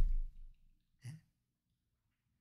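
A man's spoken word trailing off, then a single short, faint breath from him about a second in, in a pause between sentences.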